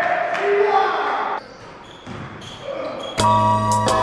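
Indoor basketball game: players calling out on court and a ball bouncing in a reverberant gym hall. About three seconds in, loud music cuts in suddenly.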